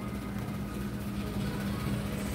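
Steady low hum of shop background noise, with no distinct events.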